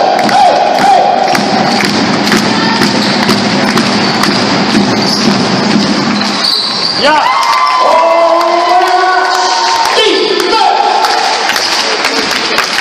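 Live basketball game sound in a sports hall: a ball being dribbled and bouncing off the floor in repeated sharp knocks. Spectators' voices and cheering run underneath, with drawn-out pitched shouts or calls near the start and again from about seven to ten seconds in.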